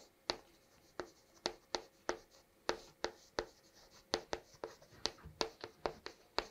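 Chalk writing on a chalkboard: an irregular run of short, sharp taps and scratches as letters are written.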